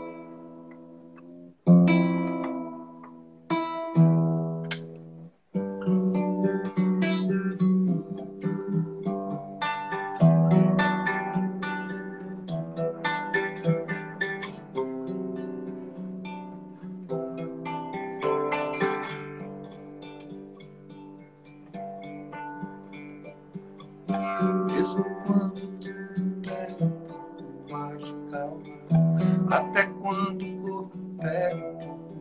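Acoustic guitar being tuned: three single chords struck and left to ring out. Just after five seconds in, continuous playing begins.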